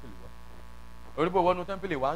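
Steady electrical mains hum from the church's public-address system in a pause between sentences, then, a little over a second in, a preacher's voice comes back over the loudspeakers.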